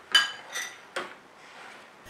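Metal ladle clinking against the side of a stainless steel pot three times while stirring soup, each clink ringing briefly; the first is the loudest.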